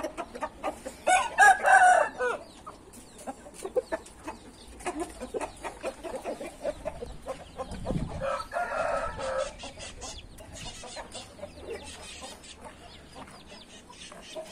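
Roosters crowing twice, the first crow loud about a second in and the second fainter about eight seconds in, with scattered small clicks and a low thump in between.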